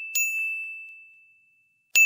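A high bell dinging as a sound effect: one ring fading as another ding strikes just after the start, then dying away.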